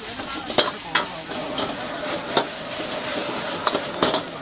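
Rice vermicelli stir-frying in a steel wok over a gas flame: a steady sizzle, with the metal spatula scraping through the noodles and clanking against the wok about four times.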